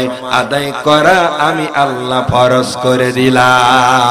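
A man chanting a Bengali sermon in a sung, melodic style through a microphone and loudspeaker system, ending on a long held, wavering note.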